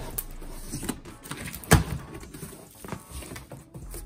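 Cardboard shipping box being cut and opened by hand: scraping and rustling of the cardboard and its flaps, with a sharp knock about one and three-quarter seconds in and a lighter one near three seconds.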